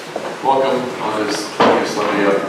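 A man speaking in a reverberant church, with a sudden sharp sound about one and a half seconds in.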